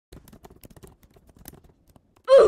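Typing on a computer keyboard: a quick, irregular run of light key clicks that begins just after a brief silence.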